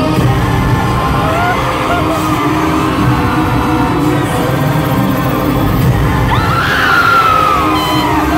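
Live pop music in an arena, with a male singer and backing track loud through the PA, recorded from the crowd. High screams from fans rise over the music near the end.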